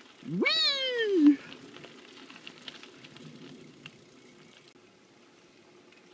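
A man's drawn-out exclamation "weee", its pitch sweeping up high and then falling over about a second, followed by faint steady rolling noise from the moving bicycle.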